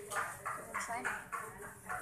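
Quiet voices talking in the background, in short broken bursts.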